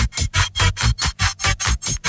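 Hard techno from a DJ mix: a bass drum and chopped bursts of noise in a fast, even rhythm, about four to five hits a second.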